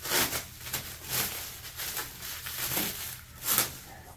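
Plastic wrapping crinkling and rustling as a packed item is handled, in a series of short irregular bursts, the loudest about three and a half seconds in.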